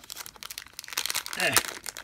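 Thin plastic toy packet crinkling in the hands as it is pulled open, a run of quick small crackles.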